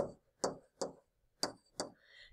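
A pen stylus tapping on a tablet screen while handwriting digits: five short, sharp taps, unevenly spaced.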